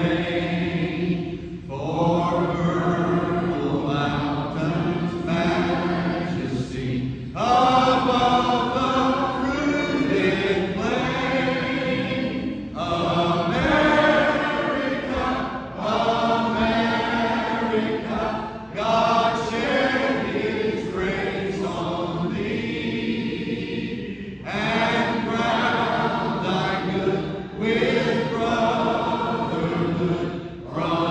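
A group of voices singing together, the congregation joining in a song. The singing comes in held phrases a few seconds long, with short breaks between lines.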